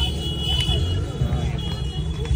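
Low rumbling background noise with faint voices in the background, and a thin high steady tone.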